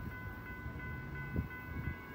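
Distant approaching freight train led by a GE ES44DC locomotive, heard as a faint low rumble with a faint steady high-pitched tone over it, and a couple of small knocks near the end.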